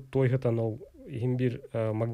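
Only speech: a man talking into a studio microphone in conversation.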